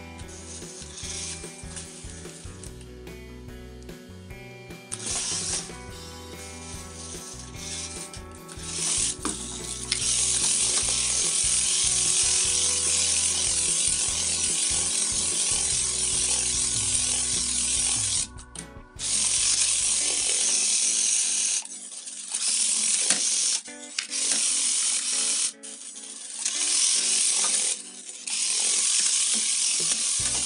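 A 1:32-scale micro RC off-road car's small electric motor and gears whirring at speed, with its tyres running on a wooden parquet floor. It is quieter at first, then loud from about a third of the way in, cutting off and starting again several times as the throttle is let off and pressed.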